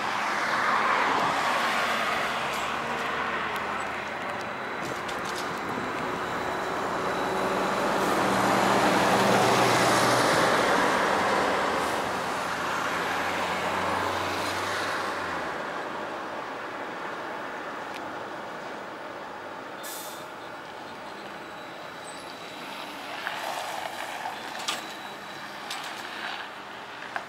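Trolleybuses passing in street traffic: a broad rush of road noise swells past, loudest about a third of the way in, with a low steady hum from a passing vehicle for several seconds. It then fades to quieter traffic with a few small clicks near the end.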